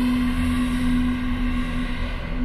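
A steady held drone from an ambient soundtrack: one low sustained note with overtones over a low rumble, with no beat or change.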